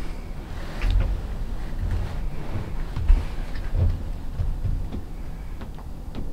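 Low, uneven rumble on the microphone, with a few faint rustles and clicks.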